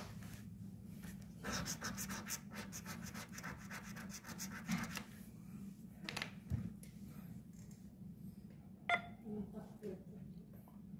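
A coin scraping the coating off a scratch-off lottery ticket in a run of quick strokes, busiest about one and a half to two and a half seconds in, followed by a few scattered light clicks of handling.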